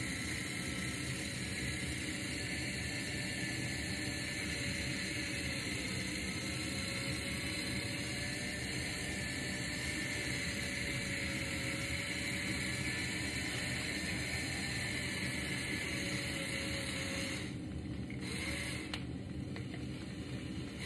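Electric pepper mill running, a steady whir of its small motor grinding peppercorns, which stops about 17 seconds in, starts again briefly a moment later and stops.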